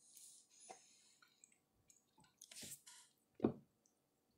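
Soft, wet chewing of a mouthful of burger, in irregular smacks and squishes. There is a louder single thump about three and a half seconds in.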